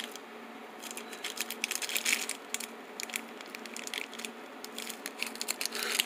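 Thin clear plastic bag crinkling and rustling as it is handled, in short irregular bouts.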